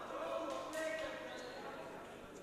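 Men shouting in a hall, with a few sharp thuds in the first second, as at an MMA fight where corners and spectators yell during the bout.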